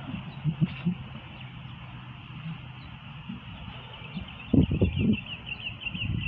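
Small birds chirping in a quick run of short high calls over steady background noise, with a few dull low thumps shortly before the end.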